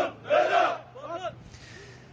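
A crowd of men chanting a slogan in unison, loud rhythmic shouts about twice a second that die away about a second in.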